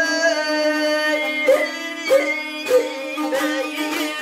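Azerbaijani ashiq singing: one voice holds a long high note, breaking several times into quick ornamented turns, over a steady drone and a few plucked saz strings.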